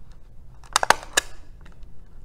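Swingline desktop stapler driving a staple through the edge of layered construction paper: a sharp crunching click a little under a second in, then a lighter click about a second in.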